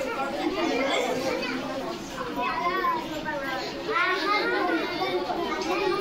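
Several voices, children's among them, chattering over one another in a room.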